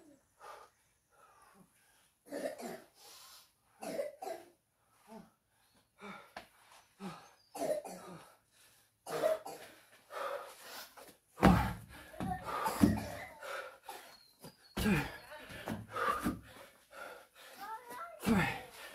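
A man coughing and breathing hard, out of breath from exercise, in a string of short irregular bursts that come faster and louder in the second half, two of them much louder than the rest.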